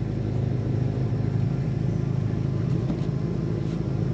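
A small boat's outboard motor running steadily at low speed, an even low hum with no change in pitch.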